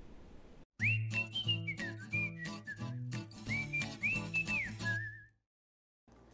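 A short musical jingle of about four seconds: a whistle-like melody gliding over bass notes and light percussion, cutting off into silence.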